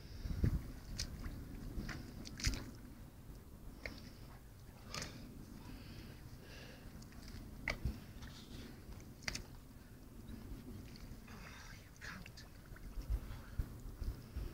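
Faint, irregular wet squelches and clicks of waders pulling and sinking in soft estuary mud, with a small cluster of them near the end.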